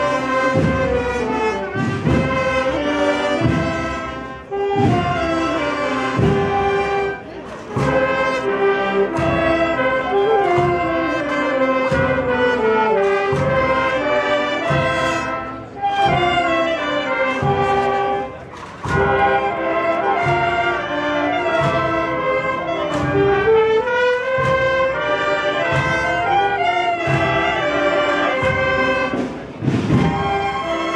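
Brass band playing a processional march, the brass melody carried over a steady drum beat.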